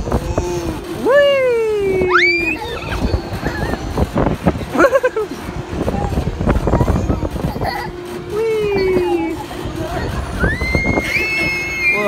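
Riders shrieking and crying out on a swinging pirate ship ride: a long falling "whoa" about a second in and again near the end, a sharp rising shriek at about two seconds, and a high held scream near the end. A low rush of wind on the microphone runs underneath.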